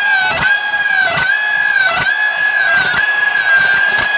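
Electric lead guitar solo: one high note held with vibrato and sustain, dipping in pitch and coming back about once a second.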